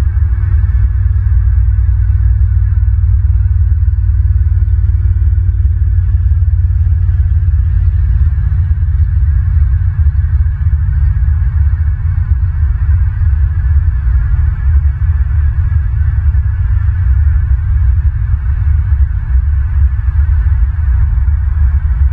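Loud, steady low rumble with a fainter hiss higher up, picked up by the nest camera's outdoor microphone.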